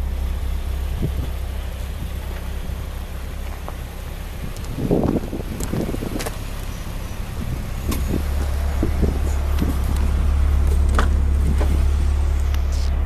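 Nissan Silvia S15's four-cylinder engine idling steadily, a low even hum that grows stronger in the second half, with a few light knocks and clicks from handling and footsteps around the car, the largest about five seconds in.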